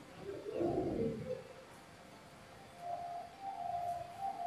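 A man's voice briefly, then from about three seconds in a mobile phone starts ringing with a melodic ringtone of held tones.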